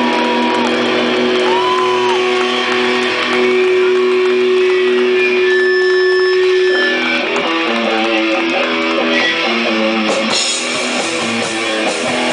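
Live rock band with electric guitars holding long, sustained notes, one note bent up and back down about a second and a half in. At about seven seconds the guitars break into a run of shorter, changing notes.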